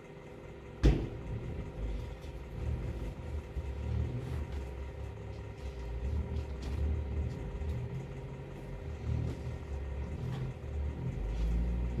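Handling noise from second-hand fleece clothing being arranged on a table: a sharp knock about a second in, then low, uneven rumbling and soft thuds over a faint steady hum.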